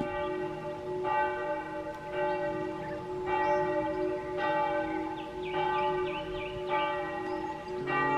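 Church bell ringing in a tower, struck about once a second, each stroke ringing on over a steady hum.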